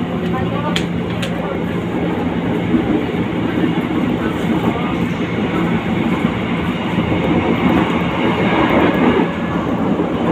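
Electric commuter train running, heard from inside the carriage: a steady rumble of wheels on rail under a constant low hum, with a couple of sharp clicks about a second in. The noise grows slightly louder toward the end.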